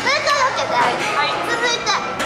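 Several young women chattering and laughing over one another in high, excited voices.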